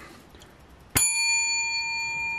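A single sharp metallic strike about a second in, followed by a bell-like ring of several clear tones that fades slowly.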